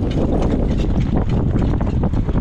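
Wind buffeting the microphone at speed, a steady low rumble, with the rapid hoofbeats of a harness horse pulling a jog cart over a dirt track.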